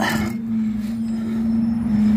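A steady hum at one unchanging pitch, with a short rustling scrape at the start.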